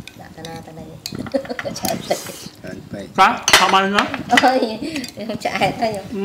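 Metal spoon and cutlery clinking against plates on a dining table, several short clinks, with people talking in the background.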